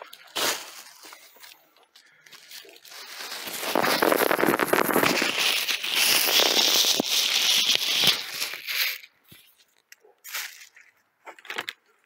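A plastic bag crinkling and rustling for several seconds as kitchen scraps are handled over a plastic compost bin, then a few light knocks near the end.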